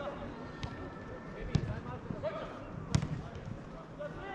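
A football kicked on the pitch: two sharp thuds, about a second and a half in and again near three seconds, over distant shouts from players on the field.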